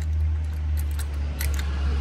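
A couple of light clicks of plastic and metal as the red quick-release lever of a handlebar clamp mount is worked and tightened, over a steady low hum.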